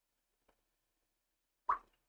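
Mostly quiet, with a faint tick about half a second in, then a single sharp plop near the end as a watercolor brush is dipped into its rinse water.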